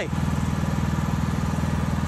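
Riding lawn mower engine running steadily at an even speed, a low, constant hum with a fast regular pulse.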